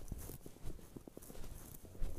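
Footsteps in snow, several irregular steps, with low thumps from the phone being carried.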